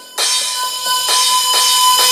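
Beatless passage of a techno track: a bright hissing wash with a steady, bell-like high tone, no kick drum or bass.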